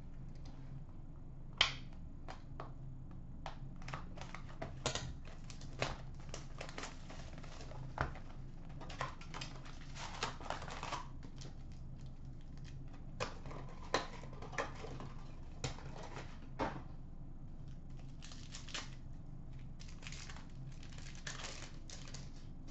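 A cardboard trading-card hobby box being opened by hand: scattered taps, crinkles and short tearing rustles of paper and plastic wrapping as packs are taken out, over a faint steady low hum.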